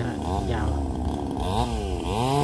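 A man speaking in Thai, over a steady low drone of a small motor.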